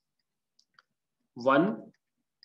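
Two faint clicks of a stylus tapping a touchscreen while writing, a little under a second in, then a man says "one".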